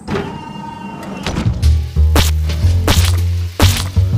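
Background music with a deep bass line that comes in about a second and a half in, and several sharp hits through it.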